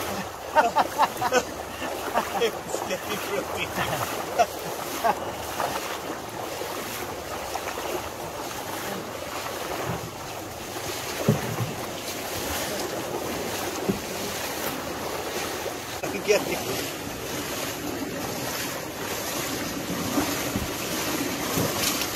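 Shallow river water rushing and splashing around legs wading and a wooden dugout canoe being pushed upstream through it, with wind buffeting the microphone. A few sharp splashes or knocks stand out in the first few seconds.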